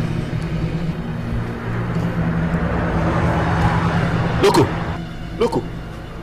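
A steady low hum under a rush of noise that swells and fades, in the way a passing vehicle does, with two short vocal sounds near the end.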